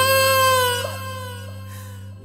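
The song's final held sung note, with a slow vibrato, trails off about a second in over a steady low accompaniment note. The music then fades quieter toward the end.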